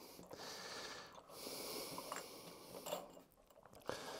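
Two long, faint breaths close to the microphone, with a couple of small clicks as a lawnmower carburetor is worked onto its mounting studs by hand.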